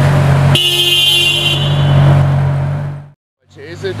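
Ferrari F12tdf V12 idling with a steady low note. A car horn sounds once for about a second, starting about half a second in. The sound cuts out completely for a moment just after three seconds.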